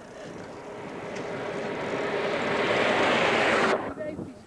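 A passing motor vehicle's noise swells steadily louder as it approaches, then cuts off suddenly.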